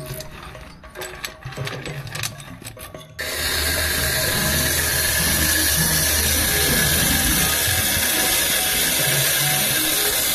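Machinery clicking and clattering irregularly. About three seconds in, it gives way abruptly to a loud, steady rushing noise with a low hum underneath.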